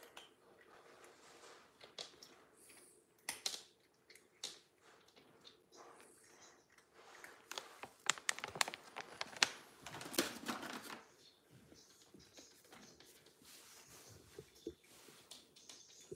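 A cat crunching dry cat treats: a quiet run of small, crisp crunches and clicks, busiest in the middle.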